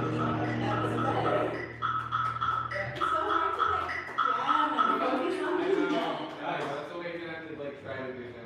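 A band playing in a large room: a held low bass note that stops about halfway through and a high note repeated in quick pulses that dies away a little later, giving way to men's voices talking.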